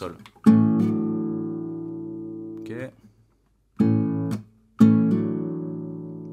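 Acoustic guitar: an A barre chord strummed, then a quick double hammer-on with the middle and ring fingers on the 2nd and 4th frets changes the chord toward B minor, left to ring and fade for about two seconds. After a short pause, a brief chord cut off quickly, then the same strum and hammer-on again, ringing.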